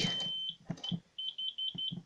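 Internal buzzer of a C-tec fire alarm control panel sounding one steady high-pitched tone for about half a second, then a short blip, then four quick beeps near the end.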